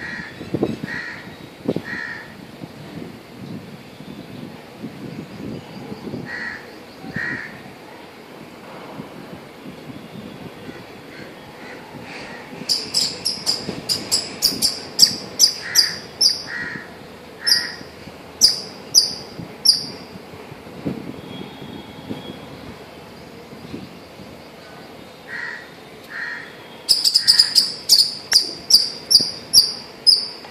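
Outdoor ambience: short bird calls in twos and threes, and in two stretches, about halfway through and again near the end, a quick run of sharp, high, evenly repeated chirps.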